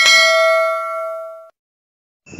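Notification-bell sound effect of a subscribe-button animation: a single bright ding ringing with several clear tones, fading, then cut off abruptly about a second and a half in.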